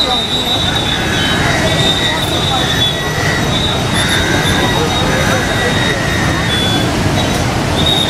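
Steady rushing roar of the Narayani River in flood, with a crowd's voices mixed in. Thin, broken high whistling tones run over the roar.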